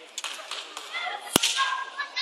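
A single sharp slap, as from a wushu changquan athlete's hand strike during the routine, about two-thirds of the way in, over faint voices in the hall.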